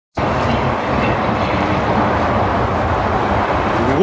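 Steady rush of wind on the microphone, with the air-cooled flat-six of a Porsche 911 (964) Carrera 2 Cabriolet running as the car rolls slowly toward it.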